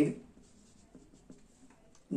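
Felt-tip marker writing on paper: a few faint, short strokes.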